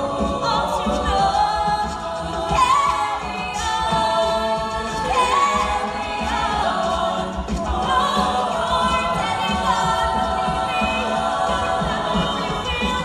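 A large mixed-voice a cappella group singing in close harmony into hand-held microphones, with a strong, steady low bass part under the chords.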